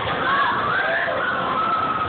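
Loud, steady din of a spinning amusement ride heard from on board: rushing noise with high, wavering gliding tones riding over it.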